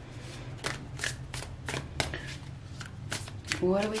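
A tarot deck being shuffled by hand: a run of quick, irregular card clicks, about five a second. A woman's voice begins near the end.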